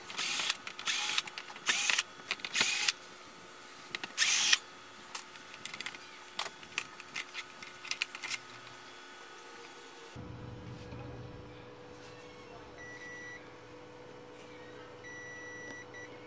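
Electric screwdriver running in five short bursts in the first few seconds, backing out the screws that hold a TV's power-supply board, followed by light clicks of the board being handled. Later come two short, high beeps.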